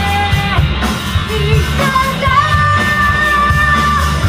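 Live rock band with a female lead singer over electric guitar and drums; she sings short phrases, then holds one long note from about halfway through.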